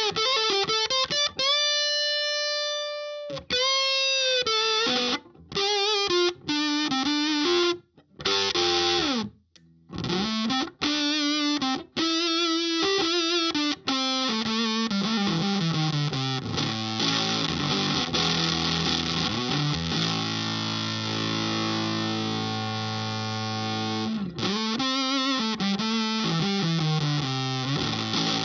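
Electric guitar (Gibson ES-335) through a Pigdog Mk1.5 Tone Bender fuzz pedal into a Vox AC30 amp. It plays fuzzed single-note lead phrases with string bends and vibrato, broken by two brief stops. About halfway through it slides down into long sustained notes and chords, and lead phrases return near the end.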